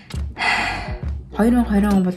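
A woman talking over background music, with a short breathy sound, like a gasp, about half a second in before her voice resumes.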